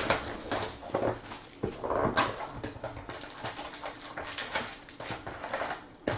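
Crinkling and rustling of foil trading-card pack wrappers as the packs are handled, in a quick run of short, sharp rustles with a louder crackle about two seconds in.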